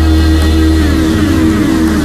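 Instrumental 1970s hard-rock passage with no singing: a held bass note under sustained guitar and synthesizer tones, with repeated falling glides in pitch.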